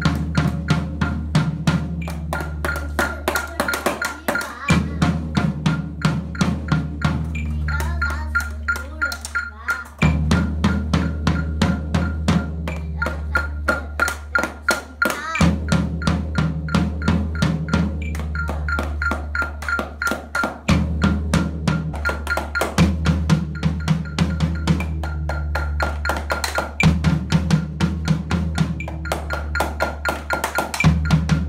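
Children drumming with sticks on a floor drum and practice pads in a steady beat, playing along to a recorded backing song with sustained bass notes and melody.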